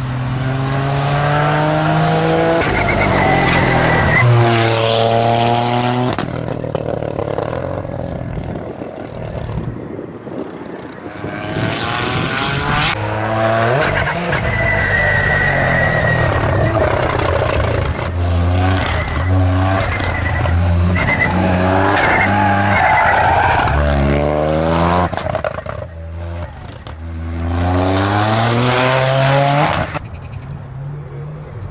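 Toyota GR Yaris rally car's turbocharged three-cylinder engine revving hard under acceleration. The pitch climbs and drops back with each gear change, in three loud runs separated by brief lulls.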